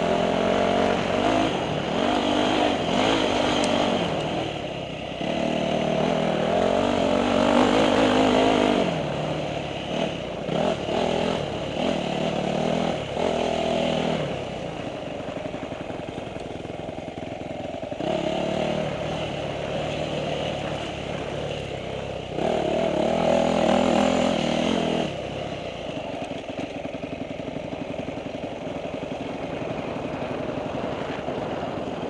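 Dirt bike engine on a rough singletrack trail, revving up and down with the throttle. There are louder pulls in the first few seconds, again from about six to nine seconds, and once more around twenty-three seconds in, with the engine easing off in between.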